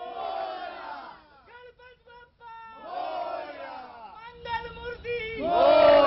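A crowd of devotees shouting and chanting devotional calls together, some calls rising and falling and others held as long notes, swelling loudest near the end.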